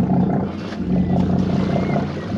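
Boat engine running at low speed, a steady low drone whose level wavers slightly.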